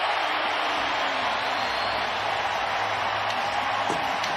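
A large stadium crowd cheering steadily just after a home-team touchdown.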